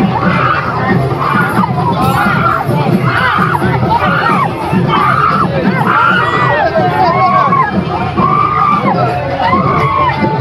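A crowd shouting a chant together in a steady rhythm of about one call a second, many raised voices at once.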